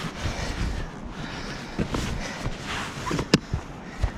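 A terry towel rubbing and wiping over the lid of a hard plastic case, with a few light knocks and a sharp click near the end.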